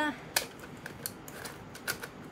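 Small hard cake-decorating tools being handled: a sharp click about half a second in, a few faint ticks, and another click near the end.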